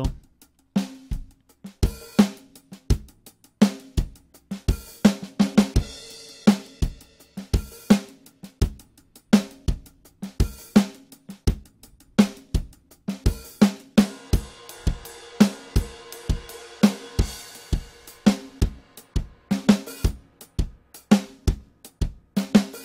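Sampled acoustic drum kit from Toontrack's Americana EZX library playing a laid-back groove: steady kick and snare hits with hi-hat, and cymbal wash in a couple of stretches. The kit sounds dry, recorded in a small room with little ambience or tail.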